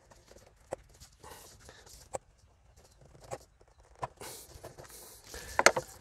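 Scattered light clicks and knocks of hands working a rubber intake hose and its plastic fittings off the throttle body, with a soft rustle about four seconds in and a quick cluster of sharp clicks near the end.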